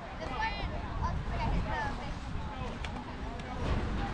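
Indistinct shouts and chatter from players and spectators around a youth baseball field, one high call about half a second in, over a steady low rumble.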